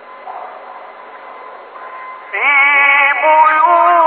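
A male reciter's voice in melodic mujawwad Quran recitation starts about two seconds in and holds a long, ornamented note that steps in pitch. Before it there is only faint background hiss and murmur. The recording is muffled and has no high treble.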